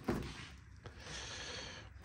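Refrigerator's freezer door being pulled open: a soft click right at the start as the door seal lets go, followed by a faint steady hiss that stops just before the end.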